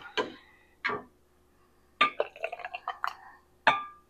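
A ladle knocking and scraping in a stainless steel pot as tomato sauce is scooped up, giving a run of clinks and knocks, some with a short metallic ring. There is a quick cluster of ticks about two seconds in and another knock near the end.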